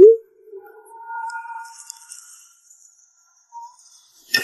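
Short electronic sound-effect sting: a loud, quick upward blip at the start, followed by soft, held ringing tones that fade out, and one more short tone near the end.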